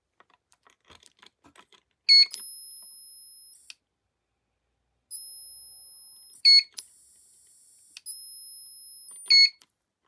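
Electric fence energiser's electronic beeper giving three short, loud beeps about every three and a half seconds as its membrane touch button is pressed, each followed by a faint high-pitched whine that fades away. Light clicks of the button being pressed come before the first beep. The beeps show that the repaired button, its corroded film bridged with wire, now registers presses.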